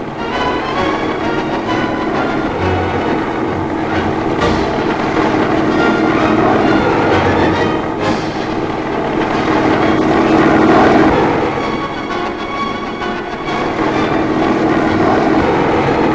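Sikorsky helicopter's engine and rotor noise, a loud steady drone that swells a little around the middle, with music under it.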